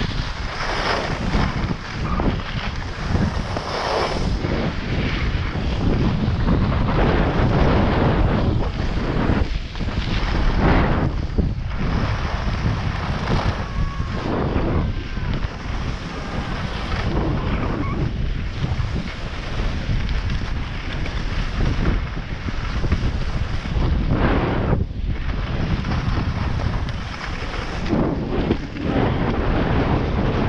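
Wind rushing over the microphone of a camera carried by a skier in motion, mixed with the hiss and scrape of skis sliding on packed snow.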